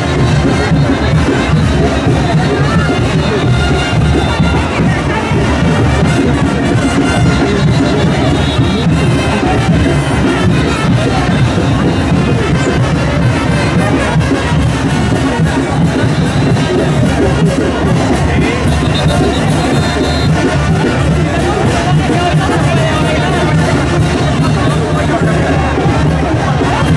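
A brass band plays loud, continuous chinelo dance music, with a crowd chattering under it.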